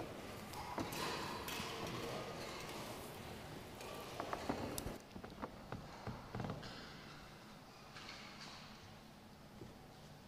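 Faint clicks and rustles from people moving in a quiet church, with a cluster of sharper clicks about four to five seconds in.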